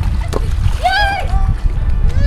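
Pool water splashing as a player leaps up to dunk a ball at a poolside basketball hoop, with a sharp knock about a third of a second in as the ball hits the hoop. A short high-pitched shout follows about a second in.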